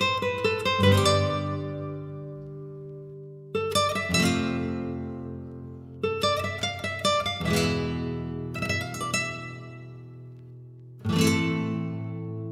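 Guitar music: clusters of quickly strummed chords about every two and a half seconds, each chord left to ring out and fade before the next.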